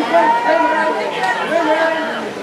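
Several people's voices shouting and calling over one another, loudest just after the start.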